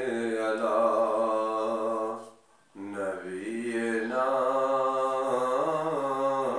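A man's voice chanting a naat in long, drawn-out held notes, two phrases with a short breath between them about two and a half seconds in.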